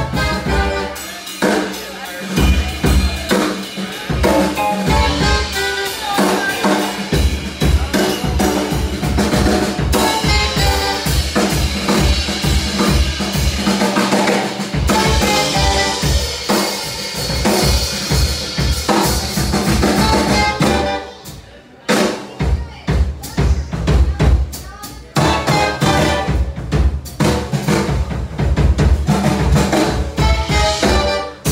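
Live band with a horn section (saxophone, trumpet, trombone), electric guitar, bass, keyboard and drum kit playing. About two-thirds of the way through the band drops out briefly, the drums carry on nearly alone for a few seconds, and then the full band comes back in.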